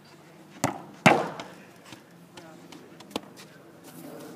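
A football kicked hard: a sharp thud just over half a second in, then a louder bang a moment later as the ball strikes something, with a short ring-out. A smaller sharp knock follows about three seconds in.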